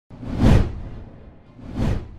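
Two whoosh transition sound effects from an animated title intro. The first swells and peaks about half a second in and fades away; a second, slightly softer one rises near the end.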